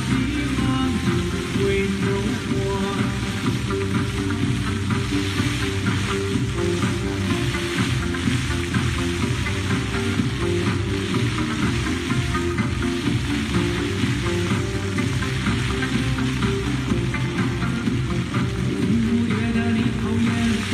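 Water jets of a floor-level dry fountain spraying and splashing down, a steady hiss, with music playing over it.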